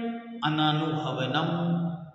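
A man's voice reciting a sutra line in a chant-like sing-song, holding long steady notes; it starts after a brief pause near the beginning.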